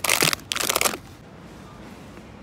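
Plastic sweet bags crinkling and rustling as a hand grabs one from a shelf box. The sound stops about a second in, leaving only low background noise.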